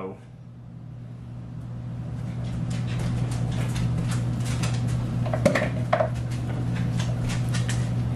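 Freshly cooked chicken and pepper fajita mix crackling in a hot steamer dish, many small irregular crackles over a steady low hum that swells during the first couple of seconds.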